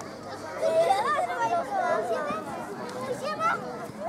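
Children chattering in a group, several high voices talking over one another with no single clear speaker.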